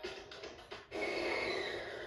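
A commercial's music trails off, then about halfway through a steady car engine rev starts, heard through a television's speaker.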